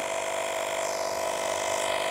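12-volt portable tire inflator's compressor running steadily while pumping air into a car tire.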